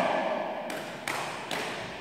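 Three sharp snaps about 0.4 s apart, from a karate instructor performing fast techniques, each echoing in a large hall.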